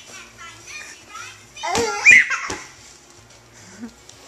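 A baby's loud, high-pitched squealing vocalisation for about a second midway, over faint cartoon voices from a television.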